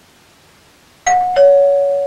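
Two-note doorbell chime, ding-dong: a higher note sounds about a second in, then a lower note, and both ring on to the end.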